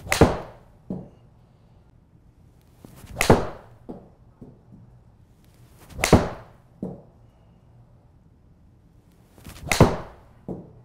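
Four full swings with a Cobra RAD Speed 7 iron, about three seconds apart: each a short swish of the club, a sharp crack of the clubface striking the ball off the hitting mat, and a softer thud under a second later as the ball hits the simulator screen.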